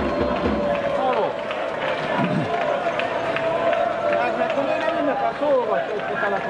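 Crowd of football supporters celebrating a win, many voices singing and shouting together at once, with a held chant note running underneath.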